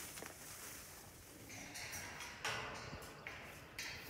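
Faint rustling and scraping of a person moving through tall oats and handling a steel wire pen panel, with a few light clicks.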